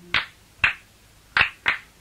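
Four sharp handclaps in an uneven rhythm, part of a background song in a pause between sung phrases.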